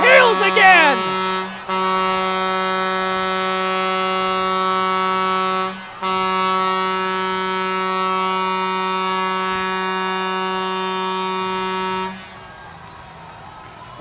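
Ice hockey arena goal horn sounding to mark a home-team goal: one long steady blast with two short breaks, about one and a half and six seconds in, cutting off about twelve seconds in.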